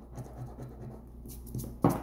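A coin scraping the coating off a scratch-off lottery ticket in short, uneven strokes.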